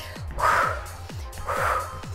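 Background workout music with a steady bass beat, and a woman breathing out hard twice, about half a second in and again about a second and a half in, as she exerts herself.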